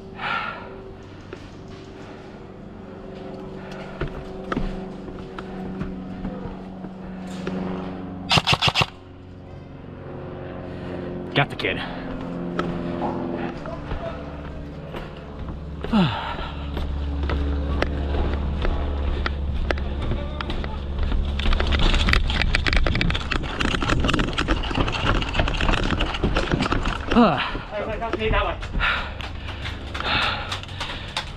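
A player moving along a wooden plank walkway, with footsteps and gear rustling. A quick burst of four or five sharp cracks comes about eight and a half seconds in, a low rumble sets in about halfway through, and dense clattering follows near the end.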